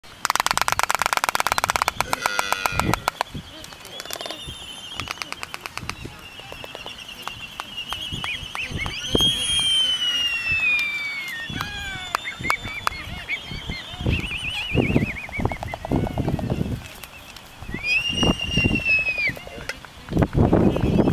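Black-footed albatrosses in a courtship dance: very rapid, loud bill-clapping clatters in the first few seconds, then high whistling calls that arc and fall in pitch around the middle and again near the end.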